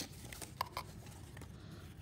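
Corrugated cardboard being gently folded by hand along scored lines: a few faint crackles and light taps.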